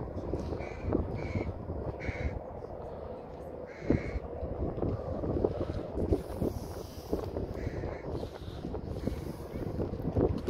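Several short, harsh bird calls, spaced irregularly, over a steady low background rumble.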